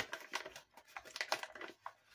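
Snack pouch crinkling as it is handled: a string of short, irregular crackles, the sharpest right at the start.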